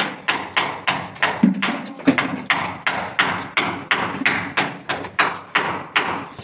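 Steady hammering: a regular run of sharp blows, about three a second.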